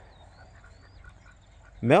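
Quiet outdoor background with a few faint, thin bird calls. A man's voice starts near the end.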